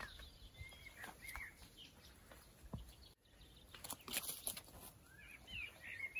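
Faint birds chirping in short calls, about a second in and again near the end, with light rustles and scuffs of a rope being handled and feet moving on grass.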